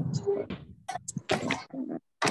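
Indistinct voices coming through a video call in short, broken bursts with brief gaps, the chopped sound of an online meeting connection.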